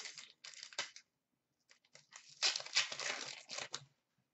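Hockey card pack wrapper being torn open and crinkled by hand, in two bursts: a short one in the first second and a longer one from about two and a half seconds in until near the end.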